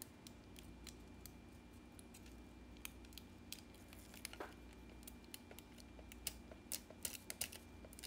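Faint scattered clicks and light taps of small nail tools being handled, a few slightly louder ones in the second half, over quiet room tone with a faint steady hum.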